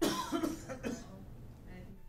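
A person coughing: two or three sharp coughs in the first second, trailing off into a short throat-clearing.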